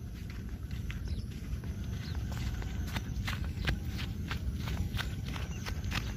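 Footsteps on dry, sandy ground: irregular short clicks that come more often from about two seconds in, over a steady low rumble.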